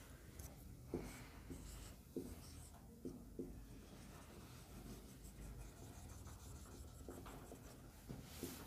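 Faint marker writing on a whiteboard: a few short taps and strokes as a number is written and boxed, over a low room hum.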